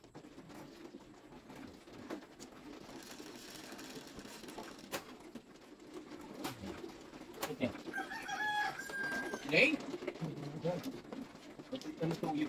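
Background birdsong: a bird calls a few times, loudest about eight to ten seconds in, with steady and then rising tones. Under it runs a low steady hum, broken by a few sharp clicks in the middle.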